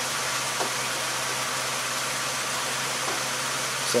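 Car engine idling steadily, heard as an even hum and hiss.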